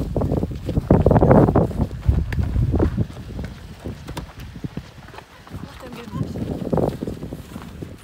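Hurried footsteps of people running across grass and a gravel drive, with voices mixed in.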